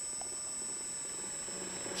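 Steady faint hum and hiss of a scale RC truck's hydraulic pump running while the crane's front arm is raised.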